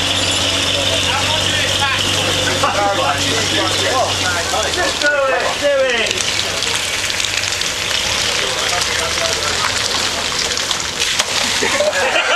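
Military vehicles driving slowly past on a muddy track: a steady low engine drone that fades about five seconds in, with people talking nearby.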